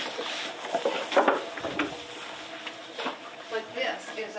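Scraping and rustling of brushes worked over a horse's thick winter coat, with indistinct voices murmuring near the end.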